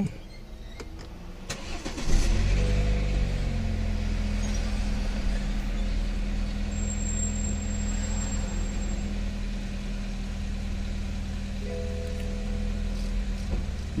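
BMW 320i four-cylinder engine started from inside the cabin. It catches about two seconds in, its revs flare and settle, and it then idles steadily. This is the first start on freshly changed spark plugs, and it runs without any problem.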